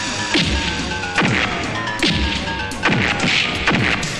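Film fight sound effects: a string of sharp punch and kick whacks, several in the four seconds, each followed by a falling low thud, over the background score.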